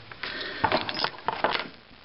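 Handling noise on a desk: a few short clicks and scratchy rustles that die away near the end.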